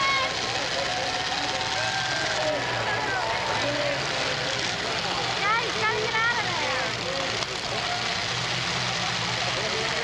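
Demolition derby cars' engines running in a steady drone, under the talk and shouts of a grandstand crowd. The voices pick up in a short spell of yelling about five and a half seconds in.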